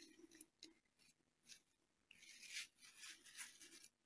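Near silence, with a faint click early and soft rustles a couple of seconds in as things on the painting table are handled.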